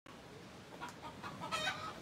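Faint outdoor background with a few short animal calls, the last one, near the end, the loudest.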